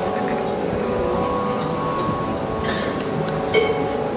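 Live Carnatic music: a steady drone of held tones sounds throughout, with shifting melodic phrases over it. A couple of short, bright clinks come in the last second and a half.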